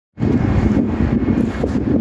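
Wind buffeting the microphone: a loud, gusty low rumble that starts abruptly just after the beginning.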